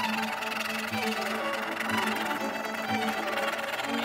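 Background music of bowed strings such as violin, with held notes.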